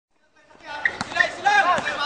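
A basketball dribbled on a hard outdoor court, a few sharp bounces starting about half a second in, under a man's voice talking.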